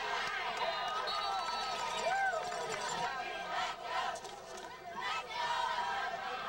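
Crowd of spectators in the stands talking and calling out over one another, a steady babble of many voices with a few louder shouts rising above it.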